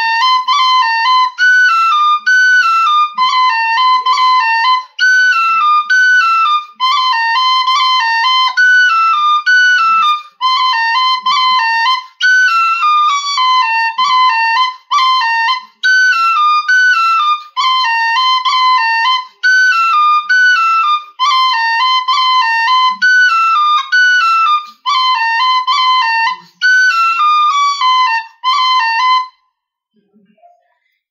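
Metal tin whistle in D playing a quick, repeating folk melody in short phrases, with rolls ornamenting the B notes and brief breath gaps between phrases. It stops shortly before the end.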